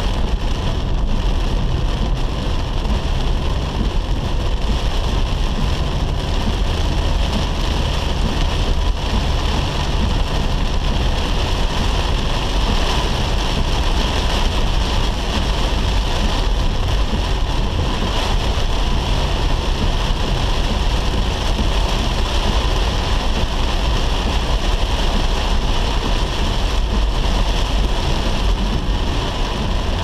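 Heavy rain drumming on a car's roof and windscreen, heard from inside the cabin, over the steady rumble of the engine and tyres on a wet road.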